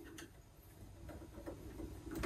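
Faint ticks and light handling sounds as thread is wound by hand around a sewing machine's bobbin tension guide and onto the bobbin on the winder. A few soft clicks are spread through it.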